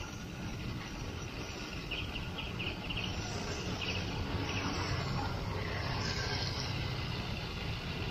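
Steady road noise while riding along a wet road: a low vehicle rumble and wind. A short run of faint high chirps comes about two to three seconds in.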